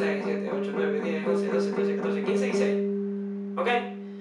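Jackson electric guitar picking a fast, even run of palm-muted notes, all the same G on the A string at the 10th fret, then letting the last note ring out about two-thirds of the way through.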